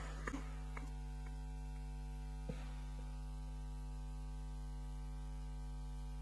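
Steady electrical mains hum in the sound system, with a few faint clicks in the first three seconds.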